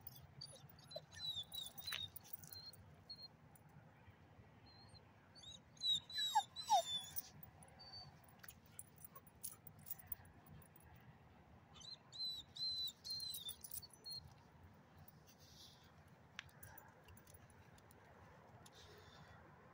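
Dogs barking and yapping faintly in three short bouts: about a second in, around six seconds, and again around twelve to fourteen seconds.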